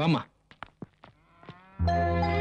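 A drawn-out voice with a wavering pitch dies away just after the start, followed by a few faint clicks. Near the end, film background music comes in with a low steady drone and sustained tones.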